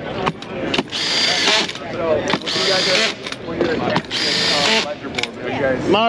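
Cordless drill driving deck screws through a CAMO Drive stand-up tool, whirring in three short bursts of under a second each, over the chatter of a trade-show crowd.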